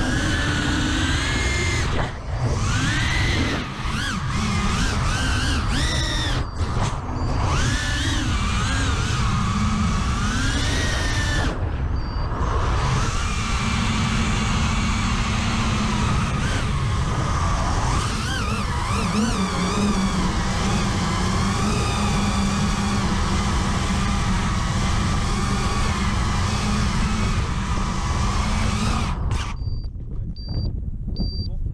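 4-inch KingKong FPV quadcopter's motors and propellers whining as heard from its onboard camera, the pitch gliding up and down with throttle and dropping out briefly several times in the first dozen seconds. The whine steadies later, then cuts off abruptly just before the end as the quad comes down on the ground.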